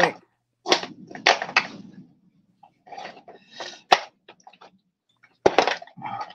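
Indistinct low voices and breathy sounds, broken by a single sharp click about four seconds in.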